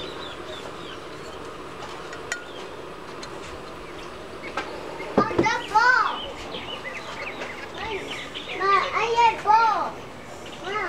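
Children's high-pitched voices calling out and chattering, starting about halfway through and loudest in two spells, over a low murmur of background sound.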